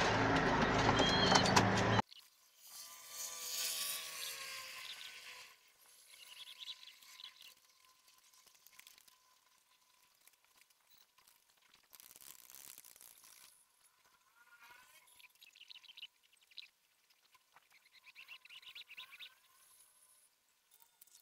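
A louder stretch of sound fills the first two seconds and stops abruptly. Then near silence follows, broken by faint pigeon calls, one of them a drawn-out coo about three seconds in, and a few brief chirps near the end.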